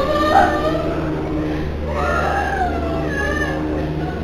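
Eerie horror-attraction ambience: a steady low drone and hum with wavering, wail-like cries that glide up and down, twice.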